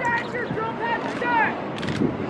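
Sharp impacts from a drill team's armed exhibition: drill rifles being slapped and handled and boots striking asphalt, with a quick cluster of hard cracks near the end. Voices call out over the drill.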